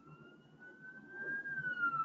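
A siren wailing at a distance: one long tone that slowly rises in pitch, then falls, growing louder over the last second.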